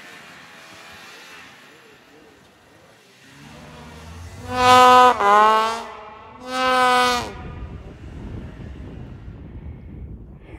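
A snowmobile running at a distance, heard faintly. Two loud held pitched tones stand out over it, about five and seven seconds in; the first drops in pitch partway through.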